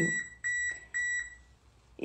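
Three short electronic beeps about half a second apart, each a steady high tone.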